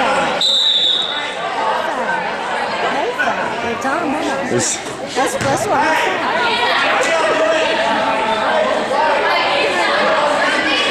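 Overlapping chatter of players and spectators echoing in a gymnasium, with a referee's whistle blown once, briefly, about half a second in. A few basketball bounces sound in the middle.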